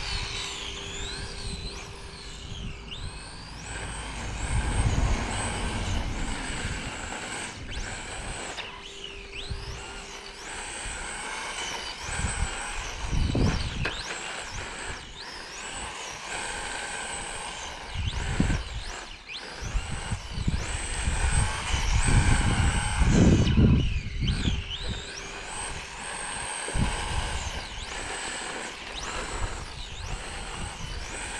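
Brushless electric motor of a radio-controlled Team Associated Apex2 Hoonitruck (3652-size, 3500 kV, 2S) whining as it accelerates and backs off, the pitch sweeping up and down again and again while the car slides around. Bursts of low rumble come in several times.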